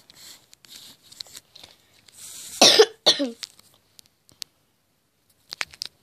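A girl's short, breathy vocal outburst in two bursts about half a second apart, a little under three seconds in. A few faint clicks follow near the end.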